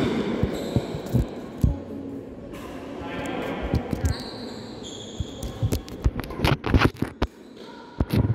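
Badminton play on a wooden indoor court: dull thuds of players' footsteps, then a cluster of sharp racket hits on the shuttlecock in the second half as a rally gets going. Brief high-pitched shoe squeaks come in about halfway through.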